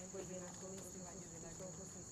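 Insects in the forest ambience, making a steady high-pitched drone.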